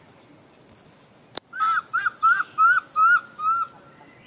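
A bird calling a run of six whistled notes, each rising then falling, about three a second, just after a single sharp click.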